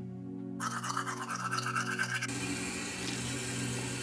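Teeth being brushed with a toothbrush: a quick, rapid scrubbing from about half a second in, giving way after about two seconds to a steady hiss. Soft piano music plays underneath.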